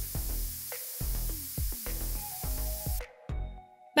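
Aerosol hairspray can spraying in one long continuous hiss that stops abruptly about three seconds in, over background music.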